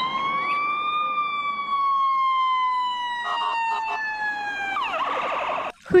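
Electronic emergency-vehicle siren on a fire-department ambulance, wailing: one long tone that rises, then falls slowly over several seconds, and switches to a fast yelp near the end.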